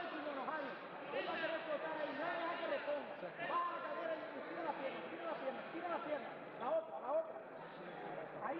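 Several people's voices overlapping without a break, talking and calling out, too indistinct to make out words.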